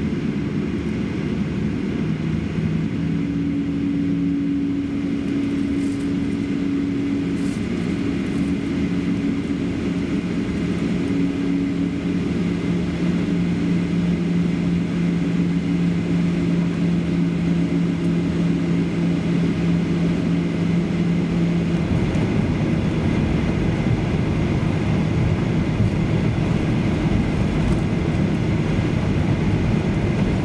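Cabin noise of a Boeing 737-800 taxiing: a steady low rumble of engines and airflow. A two-note hum runs through most of it and stops about two-thirds of the way through, after which the rumble grows rougher.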